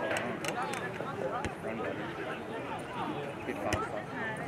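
Indistinct voices of sideline spectators talking and calling out, overlapping, with three short sharp knocks.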